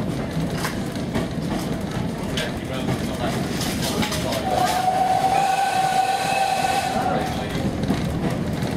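Steam-hauled carriage running along the track with a steady rumble and clicks over the rail joints, heard from inside the carriage. About halfway through, the GWR 1366 Class 0-6-0 pannier tank locomotive sounds its steam whistle in one steady blast of about three seconds.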